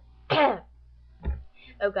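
A woman coughs once, a single short harsh cough that falls in pitch.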